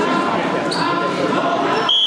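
Many voices chattering in an echoing gymnasium. Just before the end, a short, steady, high whistle blast sounds, a referee's whistle restarting the wrestling bout.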